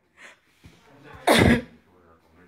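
A person's single short, loud vocal burst about a second and a half in, after a faint brief sound near the start.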